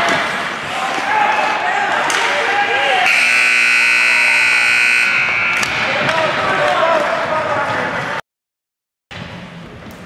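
An ice rink's scoreboard buzzer sounds one steady blast of about two seconds, a few seconds in, over shouting from players and spectators. The sound cuts out completely for about a second near the end.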